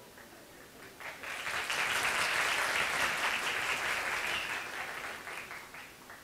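Audience clapping, starting about a second in, holding steady, then dying away near the end.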